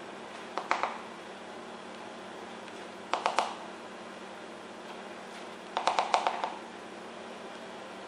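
A plastic measuring spoon tapping and clicking against a stainless steel saucepan as cocoa powder is spooned in, in three short bursts of quick light taps about a second in, after three seconds and near six seconds, over a steady low room hum.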